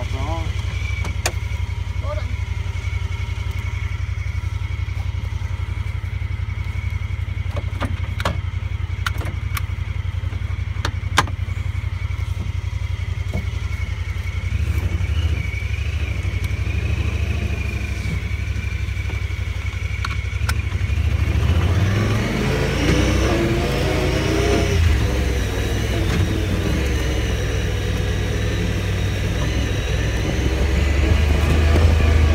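Honda Pioneer 1000-5 side-by-side's parallel-twin engine running under way, a steady low drone with a few short knocks and rattles from the cab. About two-thirds of the way through, the engine note climbs and falls as it accelerates and eases off.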